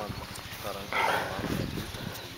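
A person's voice calling out briefly about a second in, with shorter vocal sounds just before it, over faint outdoor background noise.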